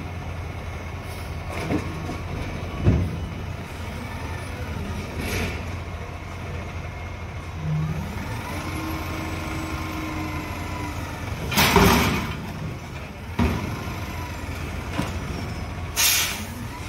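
Front-loading garbage truck's diesel engine running steadily while its hydraulic forks lift a steel dumpster up over the cab, with a drawn-out hydraulic whine in the middle. Metal clanks sound throughout, and the loudest is a short crash about twelve seconds in.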